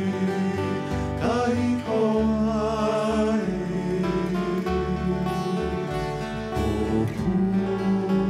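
Traditional Hawaiian song performed live: men's voices singing over acoustic guitar, ukulele and upright bass.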